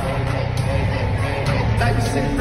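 Live hip-hop music played loud through an arena sound system, heard from the crowd, with a heavy, booming bass line and voices over it.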